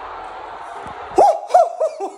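Stadium crowd noise from a televised football match, then about a second in a man's loud whooping shouts, three rising-and-falling hoots in quick succession, cheering a goal.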